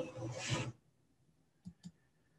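A brief rubbing, rustling noise in the first moment, like a hand or clothing brushing against a phone microphone, then quiet broken by two faint clicks near the end.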